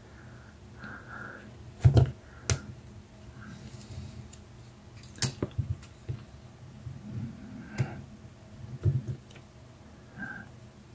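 Small metal hand tools, pliers and a wire crimper, clicking and snapping as they squeeze a small gold bullet connector on a wire. The clicks are short and irregular, with louder ones about two seconds in, around five seconds in and near the end.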